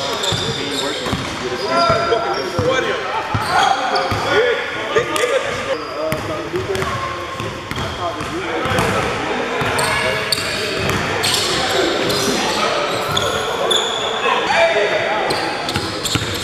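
Basketball bouncing on a hardwood gym floor during a pickup game, with players' voices and chatter echoing around the hall.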